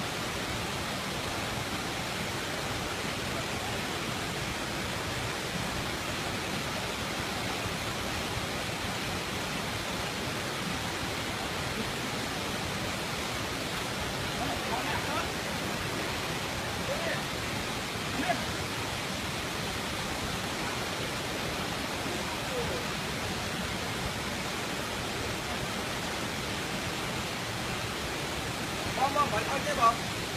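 Water rushing over rocks in a stream, a steady even noise, with faint voices about midway and near the end.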